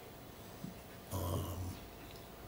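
Quiet room tone. About a second in there is a brief, soft, low murmur from a person, like a hummed 'hmm'.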